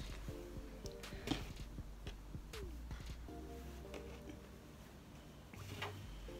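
Quiet background music with a few faint ticks and rustles of carded wool batt being pulled apart into strips by hand.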